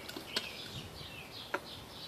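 Two short clicks, about a second apart, as a stainless steel water bottle and its cap are handled, over a faint outdoor background with birds chirping.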